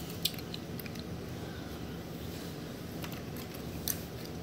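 A few faint clicks of small die-cast metal toy cars being handled, over a steady low background hum.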